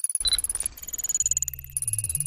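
Electronic sci-fi computer sound effects: a rapid stuttering stream of digital blips over steady high-pitched tones, with a short chime near the start and low stepping tones in the second half, a boot-up or loading sound.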